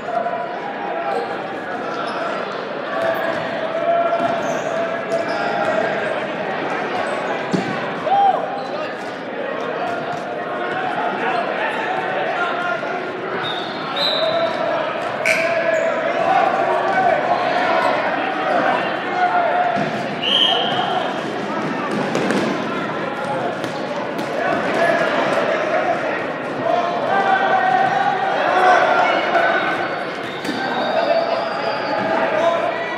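Dodgeball game in a gym: rubber dodgeballs smacking and bouncing off the hard floor at irregular intervals, over continuous indistinct shouting and chatter from players and spectators.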